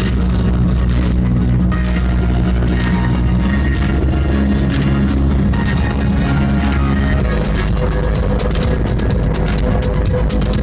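Live electronic dance music played loud over a club sound system, with a heavy sustained bass line and held synth notes. Fast high-pitched percussion ticks grow denser in the second half.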